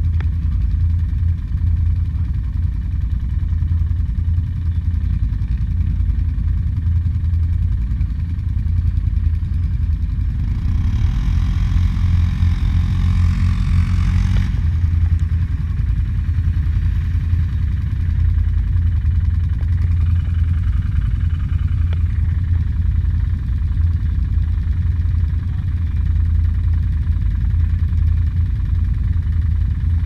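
ATV engine idling steadily close by. For about four seconds in the middle a higher, louder engine sound rises over it and then cuts off abruptly.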